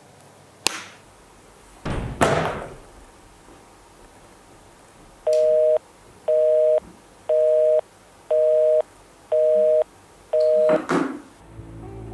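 Mobile phone's call-dropped tone: six short two-note beeps about one a second, sounding as the signal is lost. Earlier come a sharp click and a thump.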